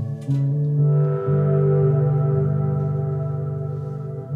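Instrumental live-band music: sustained synthesizer chords, changing chord a couple of times within the first second or so, with electric guitar.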